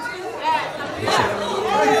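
Several voices of a church congregation calling out overlapping responses during a pause in the preaching. Near the end the preacher's voice starts again.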